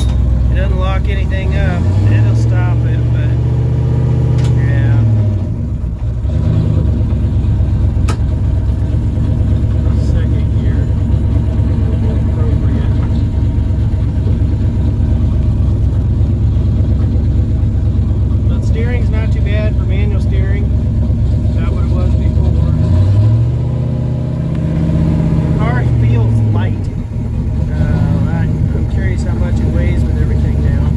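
Turbocharged 351 Windsor V8 of a 1995 Ford Mustang heard from inside the cabin while driving: a steady low drone that twice rises in pitch as the car accelerates, holds for a few seconds, then falls away with a brief dip in loudness.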